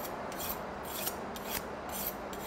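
Long carving knife drawn along a steel sharpening (honing) rod in quick repeated strokes, a metallic scrape about three times a second.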